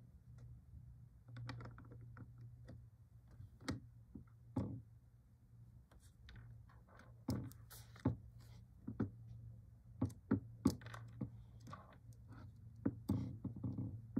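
A plastic screen-protector alignment tray being set over a phone and pressed down. Irregular light clicks and taps of plastic are heard, with a few louder knocks about ten seconds in, over a faint steady low hum.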